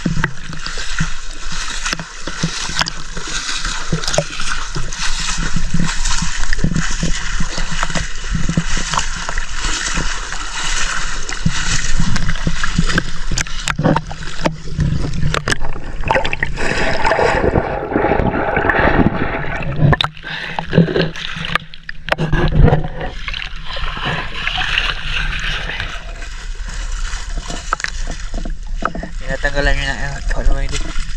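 Seawater splashing and sloshing at the waterline as a mesh net bag is hauled up through the surface, water pouring from the mesh. Midway, a stretch of muffled, churning underwater sound.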